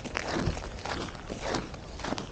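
Winter boots walking on snow-dusted lake ice: irregular footsteps, several a second.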